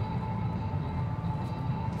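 Low, steady drone with one held mid-pitched note, typical of a tense background-music underscore.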